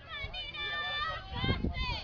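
A high-pitched voice shouting across the field: one long held call, then a few more shouted syllables, typical of cheering at a softball game.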